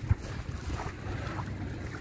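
Quiet waterside ambience: a low, steady rumble of light wind on the microphone over calm estuary water.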